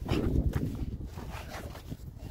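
Low, uneven rumble of handling and wind noise on a handheld phone microphone, with faint scuffing steps as it is carried around a motorcycle's rear wheel.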